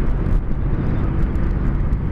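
Yamaha MT-03 motorcycle cruising on the highway: the engine runs steadily at speed under a loud, even rush of wind on the rider's microphone.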